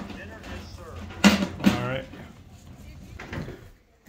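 Voices: a short spoken phrase about a second in, with fainter talk around it, over a low steady rumble.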